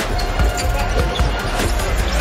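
Basketball dribbled on a hardwood arena court, a series of low bounces, over steady arena crowd noise.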